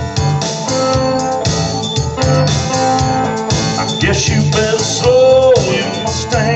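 Live rhythm-and-blues band playing an instrumental stretch: organ-toned keyboard chords over electric guitar, bass and drums, with a steady beat.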